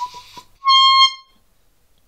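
A small chrome handheld horn honked: a brief sputtering start, then one loud, steady reedy honk lasting about half a second.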